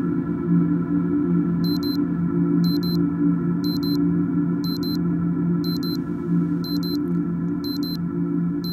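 Ambient soundtrack music: a low, sustained synth drone of several held tones, with a short, high electronic double beep repeating once a second from about two seconds in.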